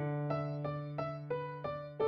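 Piano music: a melody of struck notes, about three a second, over held low notes.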